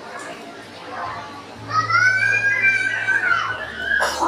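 A child's long, high-pitched shout or squeal, starting a little before halfway and lasting about two seconds, rising and then falling in pitch. It sounds over a steady low hum and faint background voices.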